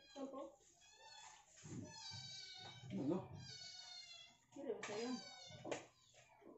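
A cat meowing several times, with long, drawn-out meows, over faint low voices.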